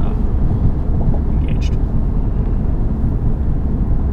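Steady low road and tyre rumble inside the cabin of a Toyota Corolla driving at highway speed, with a brief hiss about a second and a half in.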